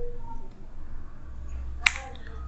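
A single sharp click near the end, over a low steady hum.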